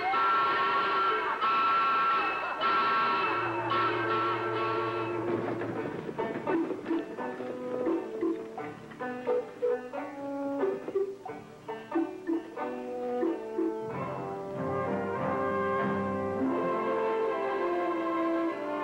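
Orchestral film score with brass. Held chords open it, short detached notes fill the middle, and sustained notes over a low line return near the end.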